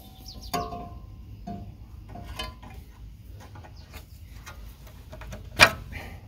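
Steel breather tube clinking and knocking against the valve cover of a diesel engine as it is worked back into its fitting by hand: scattered light metallic taps, a couple ringing briefly, with one sharper knock near the end.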